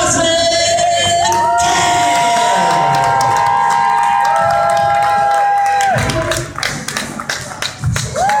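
Long drawn-out vocal notes over a public-address system in a large hall, held for seconds at a time with rising and falling ends. From about six seconds in, it gives way to crowd clapping and cheering.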